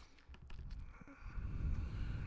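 A few faint mouse clicks, as a program icon is clicked to open it, over a low background rumble.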